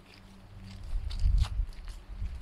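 Footsteps walking along a road, a few steps heard over a low, uneven rumble on the microphone that builds from about half a second in.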